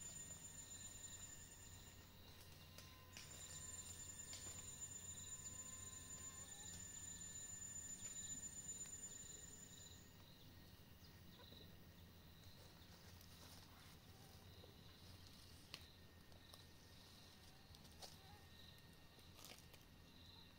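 Near silence: faint forest ambience with a thin, steady high-pitched buzz that cuts out about halfway through, and a faint high chirp repeating about twice a second.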